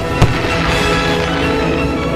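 Fireworks bursting and crackling over background music, with one sharp bang just after the start.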